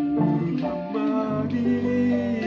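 Upright piano played by ear: a melody over sustained chords, notes changing every fraction of a second.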